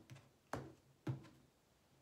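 Tarot cards being laid down one by one on a table: three sharp taps about half a second apart, the last just past a second in.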